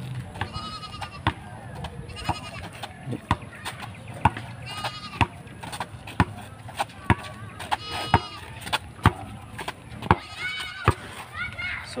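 Rubber basketball bouncing on a concrete road as it is dribbled, a sharp bounce about two to three times a second.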